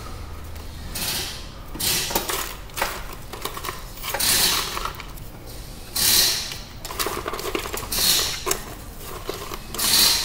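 Plastic wire loom, connectors and trim rustling, scraping and clattering in irregular bursts, about one a second, as the wiring harness is handled and pulled from a wrecked car's front end.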